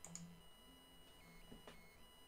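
Near silence: room tone with a few faint mouse clicks.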